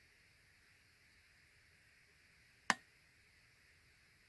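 Faint room hiss with one sharp click about two-thirds of the way through, as the wet-painted canvas is tilted back and forth by hand.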